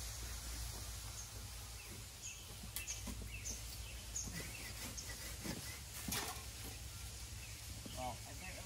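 Outdoor ambience with a low steady hum and small birds chirping in short high notes now and then, plus a few faint knocks.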